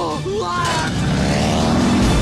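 Film-trailer sound mix over dramatic music: a man shouts in the first second, then the small seaplane's engine rises into a climbing whine over a heavy low rumble as it flies through the storm.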